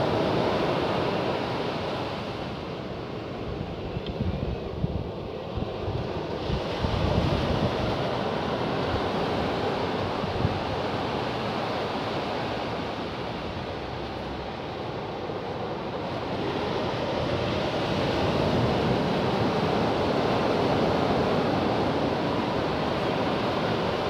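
Ocean surf washing on a beach, mixed with wind buffeting the microphone. The noise rises and falls in slow surges, easing off a few seconds in and swelling again in the second half.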